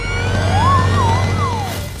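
Cartoon sound effects over background music: a long whistle slowly rising in pitch, with wavering slides that go up and down in the middle, over a steady low hum.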